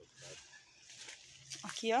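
A fairly quiet outdoor background with a few faint, short, voice-like calls. Near the end a woman's voice comes in briefly.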